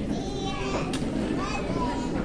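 Indistinct chatter of children's voices, with a single sharp click about a second in.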